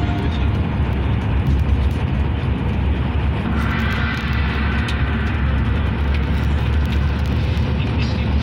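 Steady low engine drone and road noise of a Yutong coach driving along a highway, heard from inside the cab.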